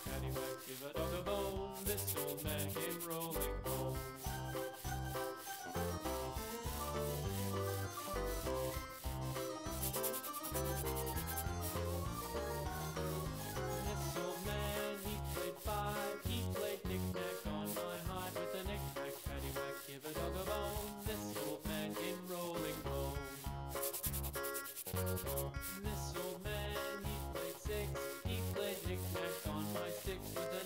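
Felt-tip marker rubbing and scratching over a white ball as it is coloured blue, with background music playing.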